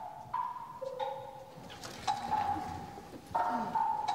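Soundtrack of a dance piece: long held tones that jump suddenly from one pitch to another every second or so, with scattered sharp taps like footsteps on a stone floor.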